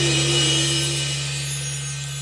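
Live band music at a lull: a held pitched note fades away while a steady low note sustains underneath.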